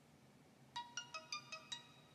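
A faint electronic phone tone: a quick melody of about six short notes at different pitches, starting a little before the middle and lasting about a second.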